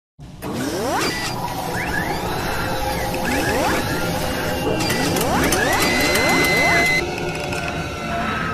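Sci-fi intro sound effects: a series of rising whooshes with mechanical clicks and clanks, then a high steady tone held for about a second that cuts off near the end.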